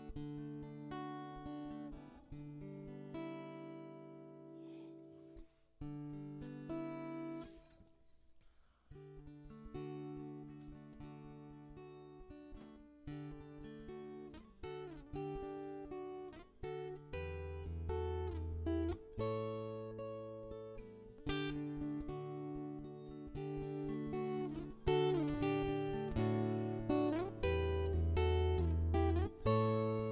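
Solo acoustic guitar playing an instrumental intro: notes picked and left to ring over a slow chord progression. There is a brief lull about eight seconds in, and lower, fuller bass notes come in during the second half.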